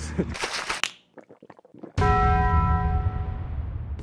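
A short breathless laugh, a brief hush, then about halfway through a single bell-like chime is struck and rings with several steady tones that fade away over about two seconds.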